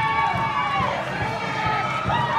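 Church congregation and worship singers with overlapping voices, holding long notes that slide down in pitch, over an uneven low pulse.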